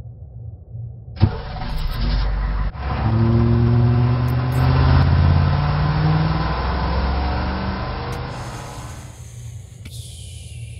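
A school bus engine kicks in with a sharp bang about a second in, then runs loud and revs up slowly as the bus pulls away, fading toward the end. A high hiss of escaping gas starts just before the end.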